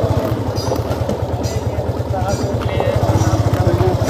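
Motorcycle engine idling steadily, heard close up from the rider's seat, its firing beat even and unbroken.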